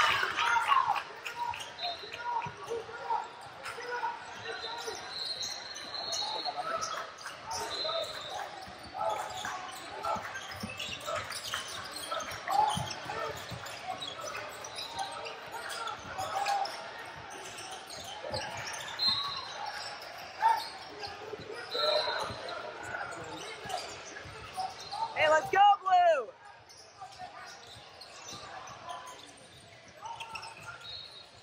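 Basketballs bouncing on a hardwood gym floor, with indistinct voices echoing around a large gym. Near the end comes a loud call that falls in pitch.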